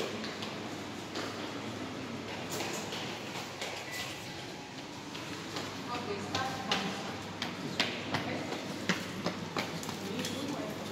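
Indistinct murmur of people's voices, with a series of sharp clicks in the second half.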